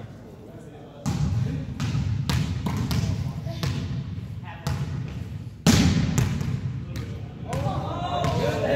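A volleyball being struck and bouncing on a hardwood gym floor: sharp smacks about a second in, near five seconds and, loudest, near six seconds, each followed by a booming echo in the hall. Players' voices can be heard near the end.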